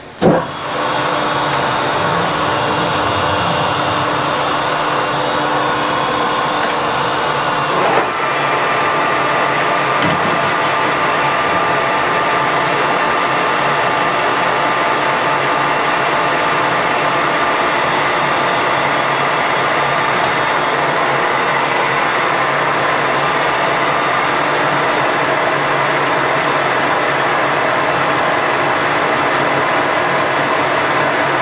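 Metal lathe starting with a sharp clunk as the spindle engages, then running steadily while turning metal off the counterweight of a Suzuki 650 twin crankshaft spinning in the four-jaw chuck. About eight seconds in there is a brief knock and the running tone shifts.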